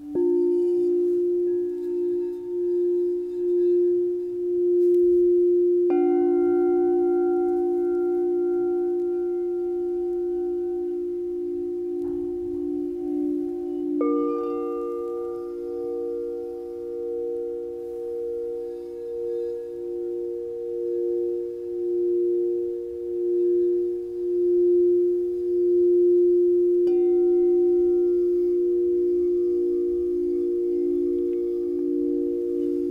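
Crystal singing bowls struck with a mallet and left to ring: deep sustained tones that overlap and pulse slowly. A further bowl is struck about six seconds in, again around fourteen seconds, and once more near the end, each adding a new tone to the ringing chord.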